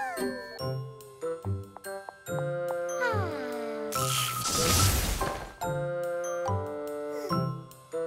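Cartoon background music of tinkling, chiming notes with a few descending pitch glides. About four seconds in, a shimmering magic-wand sound effect swells for about a second and a half.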